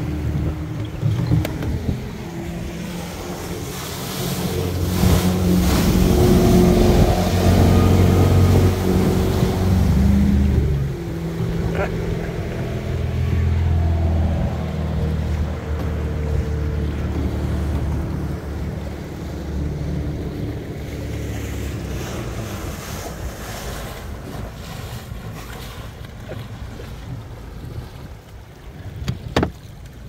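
A motorboat engine running as the boat passes close at speed. It grows louder from about four seconds in, is loudest for several seconds, then fades slowly. Underneath is the rush of churned water along a sailboat's hull, and wind.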